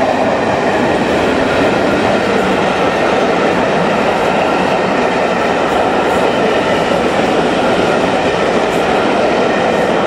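A rake of passenger coaches rolling past at close range, with loud, steady wheel-on-rail running noise.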